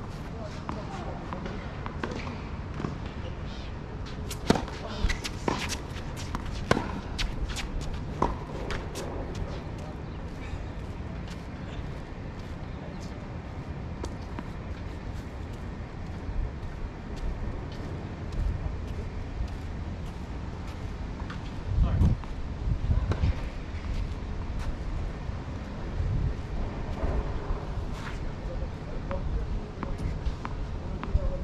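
Tennis ball being struck by rackets and bouncing on a hard court: a quick run of sharp pops from about four to nine seconds in. A few dull low thumps follow a little past the middle.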